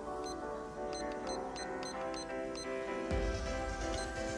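Background music, with a digital kitchen timer giving seven short, high beeps in quick succession, one for each press of its minute button as it is set to seven minutes.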